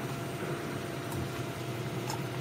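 Steady low mechanical hum, such as a fan or machine running, with a faint click about a second in.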